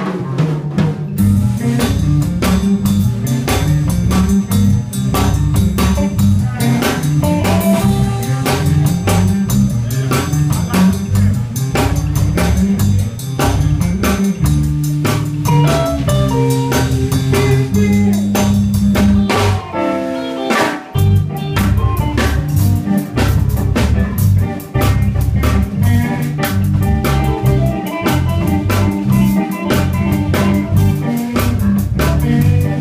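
Live blues band playing an instrumental passage: electric guitar over bass and a drum kit keeping a steady beat, with a brief break in the groove about twenty seconds in.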